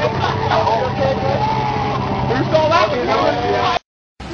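People's voices talking over a steady low hum. The sound cuts off abruptly near the end.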